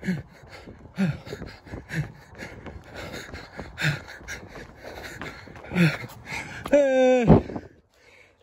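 A man's voice, breathless from a long run: short grunted shouts every second or two with panting between, then a loud, drawn-out yell near the end that bends in pitch and cuts off.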